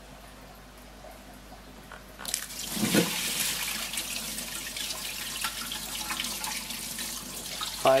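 Water poured from a plastic measuring jug into an empty glass aquarium, splashing onto a piece of clay flower pot laid on the gravel. The pouring starts about two seconds in and runs on steadily.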